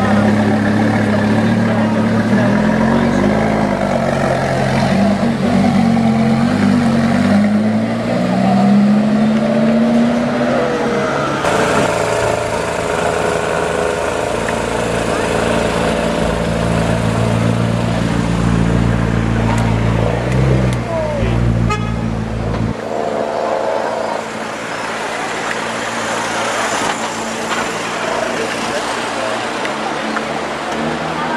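Lamborghini Gallardo V10 running at idle, its pitch rising and falling in short blips. After a sudden change about 11 seconds in, a McLaren MP4-12C's twin-turbo V8 idles steadily, and about 23 seconds in the deep engine sound drops away, leaving voices and street noise.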